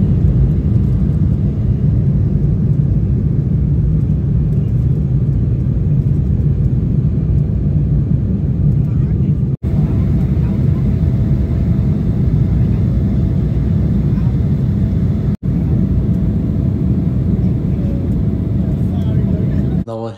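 Jet airliner cabin noise at takeoff and climb, heard from a window seat: a loud, steady low rumble of the engines and rushing air. It cuts out for an instant twice.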